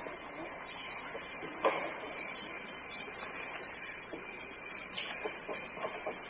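Rainforest ambience: a steady high-pitched insect drone, with a few short calls or knocks over it, the clearest about a second and a half in.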